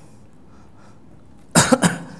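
A man coughing into his hand, a couple of quick, sharp coughs near the end after a moment of quiet room tone.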